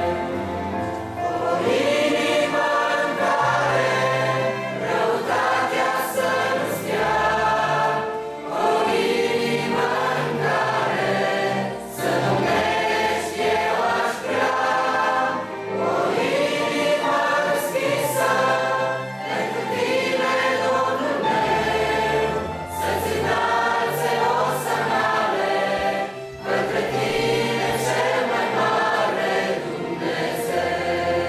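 A mixed choir of young men and women singing a hymn, phrase after phrase with short breaths between, over held low bass notes.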